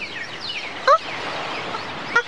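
Beach ambience: waves washing on the shore with a string of short, falling bird cries, like gulls. About a second in comes one louder, rising cry.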